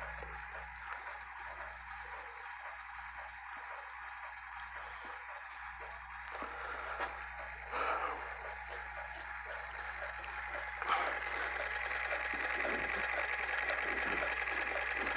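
A small plastic-bottle rotor fitted with magnets, spinning on its metal axle in a homemade magnet motor. It makes a faint, steady, rapid mechanical ticking and whir while it runs with the magnet arm brought close. There is a small knock near the end, after which it is a little louder.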